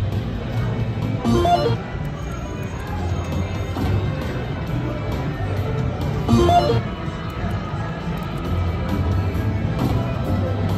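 Video slot machine playing its game music over casino-floor din, with two louder bursts of machine sound about five seconds apart as the reels are spun.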